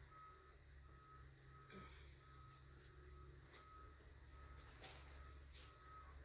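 Near silence: faint rustling of a plastic bag and clothing being handled, with a few soft crinkles, over a faint high beep that repeats evenly about once a second.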